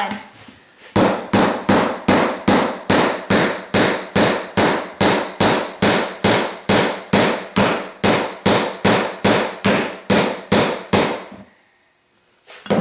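A hammer repeatedly striking a nail being driven through an iPod touch into a wooden block: a long, even run of sharp blows, about three a second, that starts about a second in and stops shortly before the end. The nail is struggling to get through the back of the iPod.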